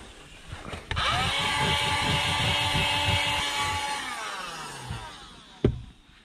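Small cordless handheld vacuum cleaner switched on about a second in: its motor whine rises to speed, runs steadily, then winds down in pitch as it is switched off. A single knock near the end.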